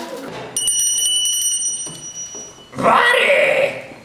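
A small bell rung rapidly for about a second and a half, its ring dying away over the next second, followed by a loud vocal cry about three seconds in.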